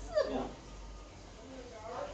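A brief trailing bit of a woman's voice in the first half-second, then a quiet stretch with only faint room sound.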